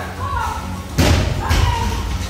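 Two sharp, heavy thuds about half a second apart, the first about a second in.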